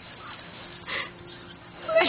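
A small dog whimpering briefly and faintly, about a second in.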